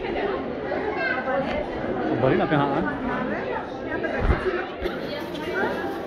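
Indistinct chatter of several people's voices, with a brief low thump about four seconds in.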